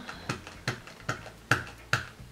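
An ink pad dabbed repeatedly onto a rubber stamp, five sharp, evenly spaced taps about two and a half a second.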